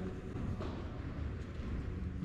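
Steady low rumble of background noise in a large aircraft hangar, with a few faint soft knocks.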